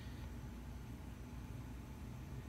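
Quiet room tone: a faint, steady hiss with a low hum underneath, and no distinct sounds.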